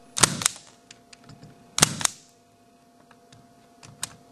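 Fluke D814 spring-loaded impact punch-down tool with a 110 blade firing on a patch panel: four sharp snaps in two close pairs about a second and a half apart. Each impact seats a wire in the 110 block and cuts off the excess.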